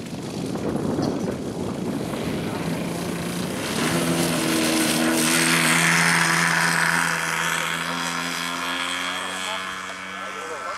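Petrol engine (GP 123) of a large RC Extra aerobatic model plane going to full throttle for takeoff. About four seconds in the propeller note swells sharply, is loudest a couple of seconds later as the plane lifts off past, then fades with its pitch dropping slightly as it climbs away.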